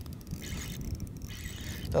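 Spinning reel (a 3000-size Shimano Stradic Ci4+) being cranked while fighting a hooked smallmouth bass, its gears and line pickup whirring over a steady low rumble of wind and water.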